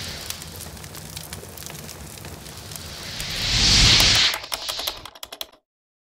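Intro sound effects: a dense crackling of clicks with a swelling whoosh that peaks about four seconds in, then a quick run of sharp clicks that cuts off suddenly.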